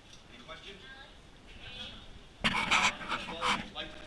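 People's voices: faint talk at first, then a sudden, much louder voice close to the microphone about two and a half seconds in, lasting about a second and a half.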